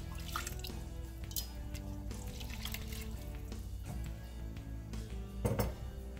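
Background music with held notes, over the splash and trickle of milk poured from a cup into a stainless-steel pot of rice and beef; a louder splash comes near the end.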